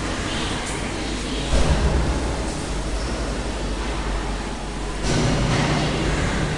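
Steady hiss with a low rumble underneath, the rumble swelling louder about a second and a half in and again near the end.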